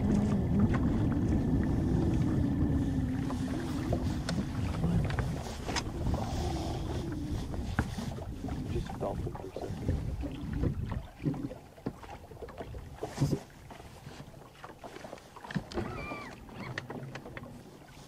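Wind and water on a bass boat, with a low steady hum for the first few seconds, then scattered small knocks and clicks as the angler works a hooked fish on the rod.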